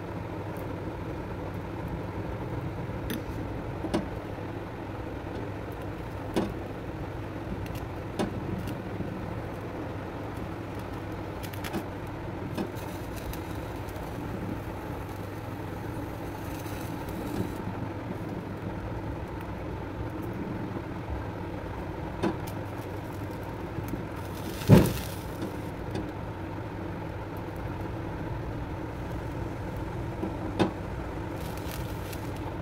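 Steady low rumble of a gas stove burner flame under a wire grill rack where an eggplant and tomatoes are roasting. A few light clicks sound through it, and one louder knock comes about 25 seconds in.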